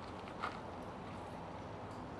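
Steady low outdoor background noise, with one brief sharp click-like sound about half a second in.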